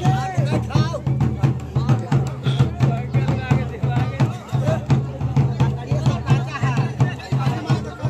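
Drumming with a fast, steady beat, with people's voices over it.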